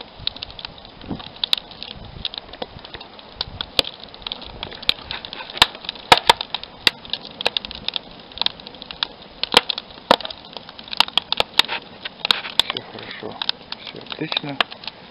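Wood fire crackling in a barbecue made from a 200-litre steel barrel: irregular sharp snaps and pops, bunched more thickly about six seconds in and again late on.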